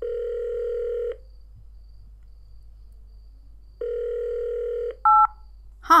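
Telephone ringback tone: a steady low tone rings twice, about a second each with a pause of nearly three seconds between, followed by a short higher beep just before the call's first words.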